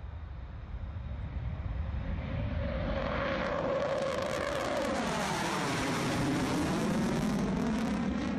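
Jet aircraft flying past: a roar that builds over the first few seconds, with a whining tone that drops in pitch as it passes, about five seconds in.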